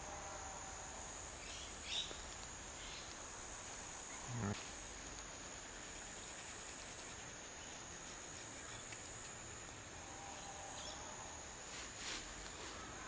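Faint bush ambience dominated by a steady, high-pitched insect drone that holds one pitch throughout. A brief soft noise stands out about four and a half seconds in.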